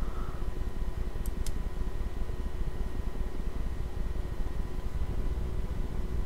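Room tone: a steady low hum and hiss with faint thin steady tones, and two faint ticks a little over a second in.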